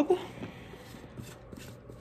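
A sharp plastic click just after the start, then faint light handling clicks, as a Magic Bullet cross-blade base is fitted onto a cup holding dried paprika pieces.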